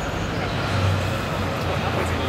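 Road traffic on a busy city street, with a vehicle's engine running low and steady, growing louder about half a second in.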